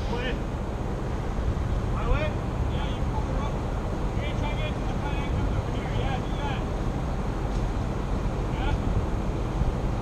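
A steady low engine hum with wind on the microphone, and faint distant voices calling out a few times.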